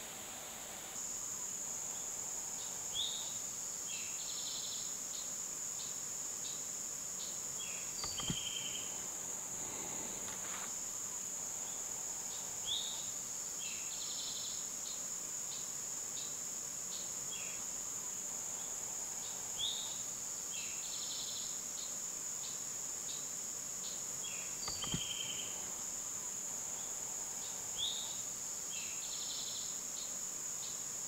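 Steady high-pitched insect drone of woodland crickets or katydids, starting about a second in, with short higher chirps recurring every several seconds and two soft knocks.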